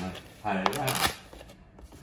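Paper lid of an instant cup noodle being peeled back from the cup, crinkling and rustling in short crackles.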